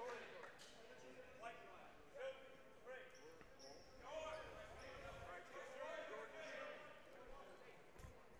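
Faint gymnasium ambience: distant voices of players and spectators, with a basketball bouncing on the court during a stoppage after a foul.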